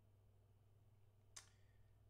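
Near silence: room tone with a steady low hum and one brief faint click about one and a half seconds in.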